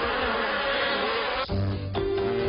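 A dense buzzing noise that cuts off suddenly about one and a half seconds in, giving way to music with held low notes.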